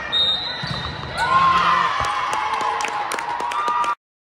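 Sounds of an indoor volleyball rally on a hardwood gym court: several sharp knocks, sneakers squeaking in short sliding chirps, and indistinct voices of players and spectators echoing in the hall. The sound cuts off abruptly just before the end.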